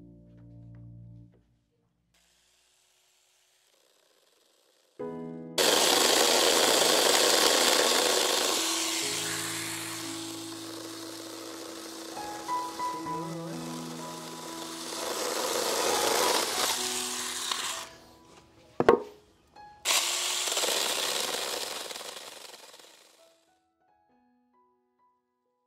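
A handheld power tool cutting into a wooden plank in two runs: a long one that starts suddenly about five seconds in, then a sharp click, then a shorter run that ends shortly before the close. Piano background music plays faintly under it.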